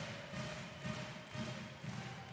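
Crowd noise in a packed indoor handball arena, with a regular low beat of about three pulses a second running under it.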